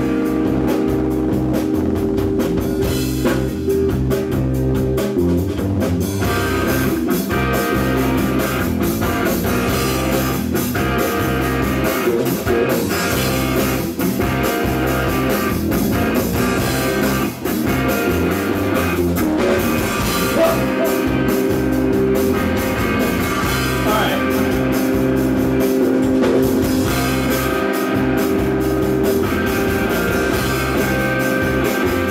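Live rock band playing a song's opening: electric guitars and bass guitar over a drum kit keeping a steady beat. The sound fills out about six seconds in.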